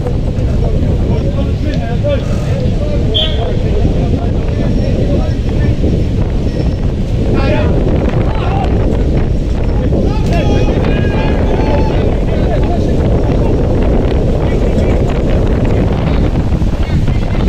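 Heavy wind buffeting a camera microphone in a steady, loud rumble. Shouted voices from the football pitch come through a few times, about three seconds in, near the middle and around ten seconds.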